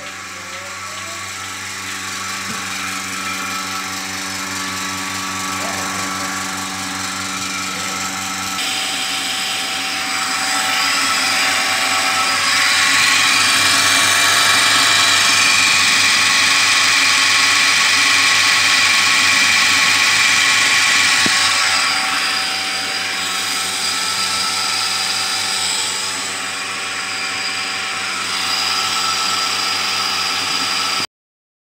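The 1.5 HP vacuum pump of a single-bucket milking machine running with a steady mechanical drone. It grows louder, is loudest about halfway through, then eases off a little.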